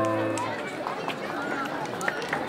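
A digital piano's held chord fades out within about half a second, leaving the chatter of a crowd with children's voices.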